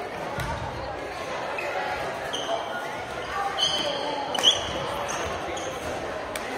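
Badminton play in a large echoing gym: sneakers squeak on the hardwood floor several times, and rackets pop against shuttlecocks across the courts, the sharpest hit about four and a half seconds in, over steady players' chatter.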